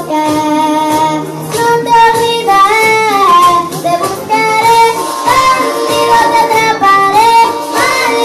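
A young girl singing karaoke into a microphone over a recorded music backing track, her amplified voice carrying a melody that glides between held notes.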